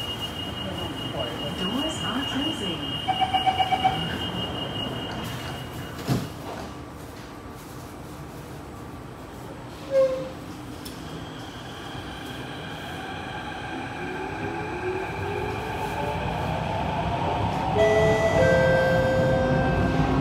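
Thomson-East Coast Line CT251 metro train at a station: a steady high door warning tone with a burst of quick beeps, then the doors shut with a thump about six seconds in. From about two-thirds of the way through, the traction motors give a whine that rises and steps up in pitch as the train pulls away and gathers speed.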